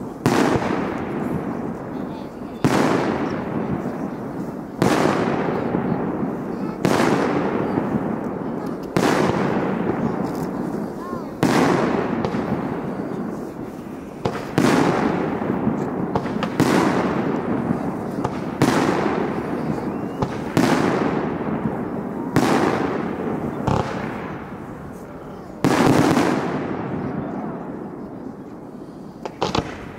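Aerial firework shells bursting in the sky, a loud bang about every two seconds, each followed by a long fading echo.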